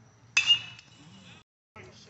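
Metal baseball bat hitting a pitched ball: a single sharp ping about a third of a second in, with a short metallic ring that fades within a second.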